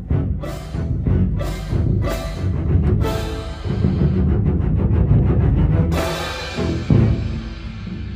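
Orchestral bass drum struck and rolled with soft mallets, a deep booming rumble, with a pair of clash cymbals crashed together several times. The biggest cymbal crash, about six seconds in, rings on and fades.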